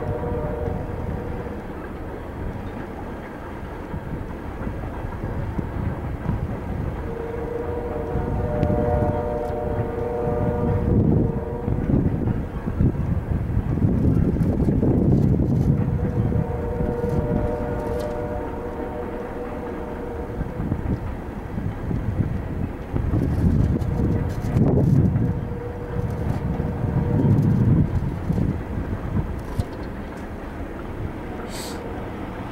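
Freight train cars rolling past at close range: steel wheels rumbling and clicking over the rails, swelling louder twice. A steady pitched tone with overtones comes and goes several times.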